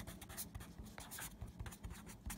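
A pen writing on paper: faint, irregular scratching strokes as a word is written out by hand.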